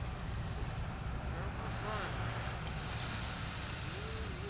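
A steady low rumble with faint, muffled voices over it.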